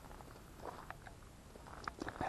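Quiet background hiss with a few faint, short clicks scattered through it.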